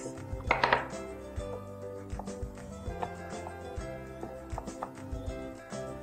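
Short plastic clicks and knocks, irregular, as slim wheels are snapped onto the servos of a modular rero robot, over quiet background music.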